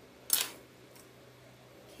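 One sharp click about a third of a second in as a slim cake-decorating veining tool is set down on the table, with a soft room hush around it.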